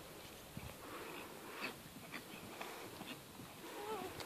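Faint, irregular hoofbeats of a pony trotting on grass, with a brief wavering pitched sound near the end.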